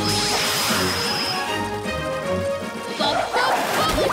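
Cartoon action score with sound effects. A noisy crash-like burst with a high held tone opens it, music runs on under it, and a sharp hit lands near the end.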